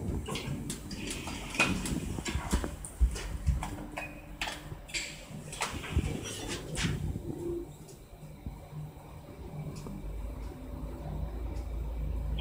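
Hitachi rope-traction passenger elevator: clicks and knocks as the car doors slide shut, then from about halfway through a low steady hum as the car sets off and travels down.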